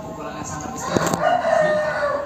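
A sharp knock about a second in, then a loud, drawn-out pitched cry lasting about a second.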